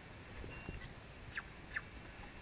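A handheld barcode scanner gives one short, steady electronic beep about half a second in. Two quick falling chirps follow near the end and are the loudest sounds, over faint outdoor background noise.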